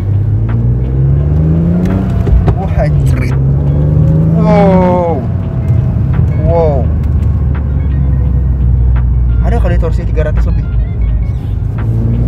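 BMW M52B30 3.0-litre straight-six in an E36, heard from inside the cabin. It accelerates with rising pitch, drops at an upshift about two seconds in, and climbs again. After a second upshift near five seconds it settles into a steady low cruising drone.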